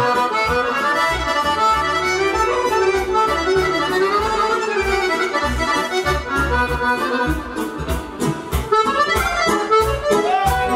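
Live band music led by an accordion playing a busy melody, over a pulsing bass line and a steady beat.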